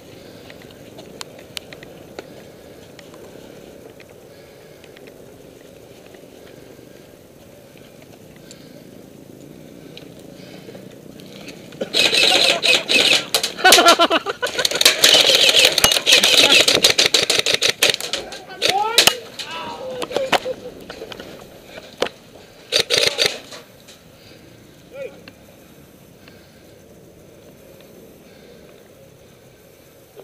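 Airsoft guns firing rapid runs of sharp cracking shots for several seconds, mixed with players' shouting, then a second short burst of fire. Quiet outdoor air before the firing starts.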